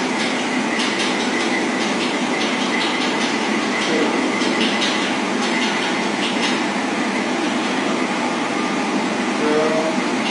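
Train running: a steady rumble and rushing noise with irregular clicks from the wheels on the rails.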